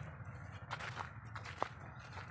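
Footsteps on dry, bare field soil, a few separate steps, over a steady low rumble.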